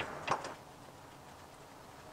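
Quiet room tone with a single faint click shortly after the start.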